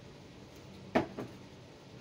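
A single sharp click about a second in, followed by a fainter one, over quiet kitchen room tone with a faint steady hum.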